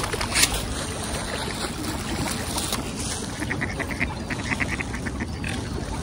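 Mallard ducks quacking close by, with a quick even run of quacks about halfway through.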